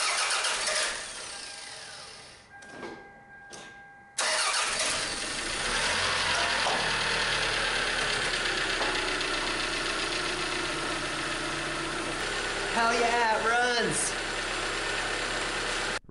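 A Toyota 5S-FE 2.2-litre four-cylinder engine starts about four seconds in and then runs steadily. This is its first start after a head gasket replacement. A short wavering sound rises over the engine noise about thirteen seconds in.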